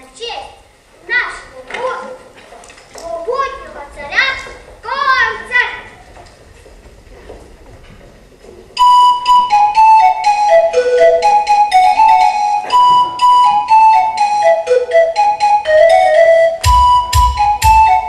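Children's voices calling out in short bursts, with pitch rising and falling. After a quiet gap, a flute melody starts suddenly about nine seconds in and plays loudly in quick notes that step mostly downward. A regular bass beat joins it near the end.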